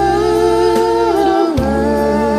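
A singing voice holds one long wordless note over a karaoke backing track. About one and a half seconds in, it drops to a lower note.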